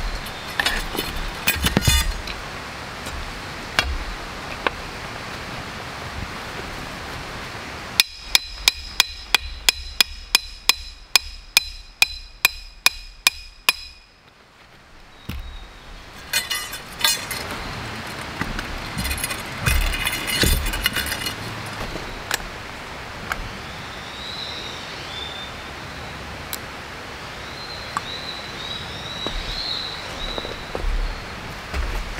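A hammer driving a lantern pole into the ground: about fourteen evenly spaced ringing metal strikes, a little over two a second, starting about eight seconds in. Lighter knocks and clatter come before and after.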